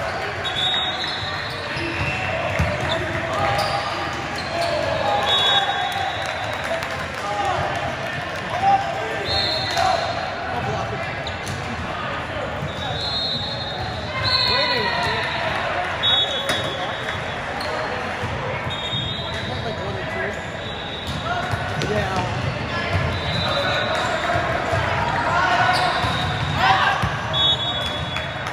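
Indoor volleyball match in a large echoing gym: players calling out and spectators chattering, with thuds of the ball being hit and short high sneaker squeaks on the court throughout.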